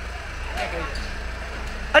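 A van's engine idling with a steady low rumble, under a few faint spoken words.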